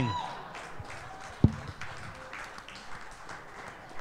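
A short laugh, then low room noise with a faint murmur, broken by a single sharp thump about a second and a half in.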